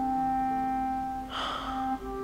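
Slow, soft background score of held notes that step between pitches. About one and a half seconds in comes a short breathy sound, a sharp breath or sniff.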